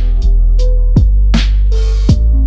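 Old-school boom bap hip-hop instrumental beat: hard-hitting drums over a deep, heavy bass, with a sad guitar melody.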